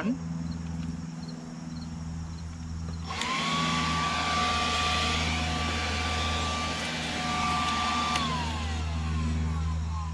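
Snapfresh 20-volt cordless leaf blower's electric motor spins up with a rising whine about three seconds in. It then runs at a steady high whine with a rush of air for about five seconds, and winds down with a falling pitch near the end.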